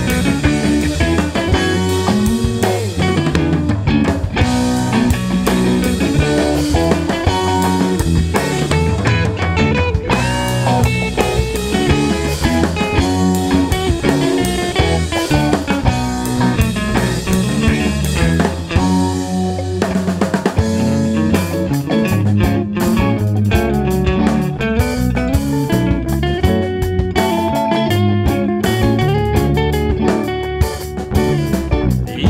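Instrumental passage of a psychedelic rock song, with guitar over a drum kit and no singing. The drumming grows busier about twenty seconds in.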